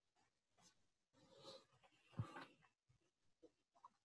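Near silence with faint rustling and a soft, low thump about two seconds in.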